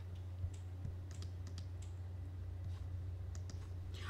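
Faint, scattered computer keyboard clicks, several keys pressed a fraction of a second to a second apart, as keyboard shortcuts are used in a drawing program. Beneath them is a steady low hum.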